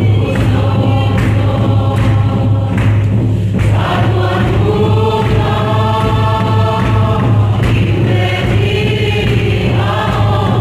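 A church congregation singing a hymn together in many voices, holding long notes through the middle, with a steady low hum underneath.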